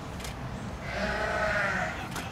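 A sheep bleating once, a wavering call of about a second that starts about a second in, over a steady low background rumble.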